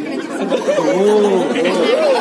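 A man's voice speaking mock magic words in a drawn-out, sing-song way, with children's chatter behind.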